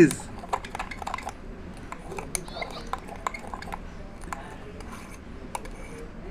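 Metal utensil stirring a small glass of foaming shampoo and Eno, with irregular clinks and scrapes of metal against the glass.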